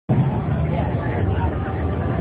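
Voices of a crowd over a steady low rumble.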